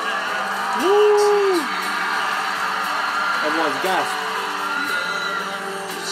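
Live pop concert recording: a male singer and band, with one loud held vocal whoop about a second in that falls away, and short sliding vocal calls a little before the four-second mark.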